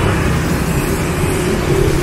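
Street traffic: motorbikes and cars passing on a wide city road, a steady low engine rumble.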